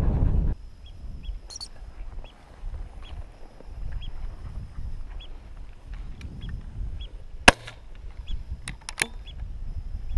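Wind buffeting the microphone cuts out about half a second in, leaving a low rustle and faint short high chirps every half second or so. A single sharp crack comes about seven and a half seconds in, followed by a few lighter clicks about a second later.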